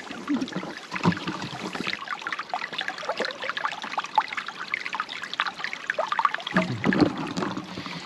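Shallow stream trickling and babbling over rocks, with a brief low bump about seven seconds in.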